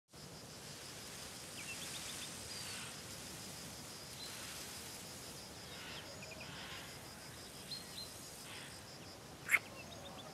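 Faint rural outdoor ambience with a few short, high bird chirps scattered through it. A single sharp click comes near the end.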